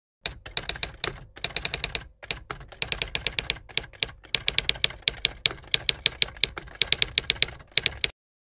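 Typewriter sound effect: quick runs of sharp key clicks, several a second, broken by brief pauses, stopping suddenly at the end.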